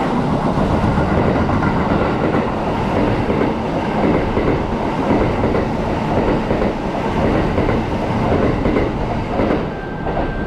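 Kintetsu 21000 series Urban Liner Plus limited express passing through the station at speed without stopping, its wheels clattering rapidly over the rail joints. The sound drops away near the end as the last car clears.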